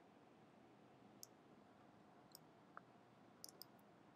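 Near silence with a handful of faint computer mouse clicks: one about a second in, a couple more around the middle, and a quick cluster near the end.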